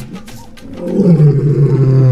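Lion roaring: one long, deep, rough call that starts about half a second in and slides slowly down in pitch. Faint drum music sits under the first part.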